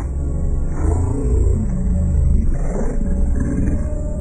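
Heavily effect-processed cartoon soundtrack audio, pitched down and distorted into a deep, continuous rumble with wavering pitched tones, mixed with music.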